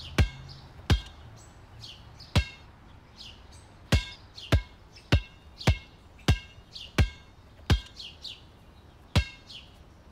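A basketball bouncing on an outdoor court, a sharp bounce roughly every half second to a second and a half with a few longer gaps, with birds chirping between the bounces.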